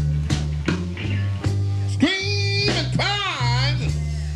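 A live electric blues band playing, with a steady beat on bass and drums. About halfway in, a lead line comes in and bends up and down in pitch in wide wavers.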